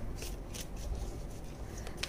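A deck of oracle cards being shuffled and handled by hand: a quick run of soft flicks and rustles.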